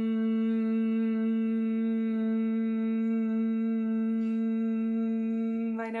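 A woman humming one long, steady note on a single exhale, the pitch held unchanged; the note ends near the end as she starts to speak.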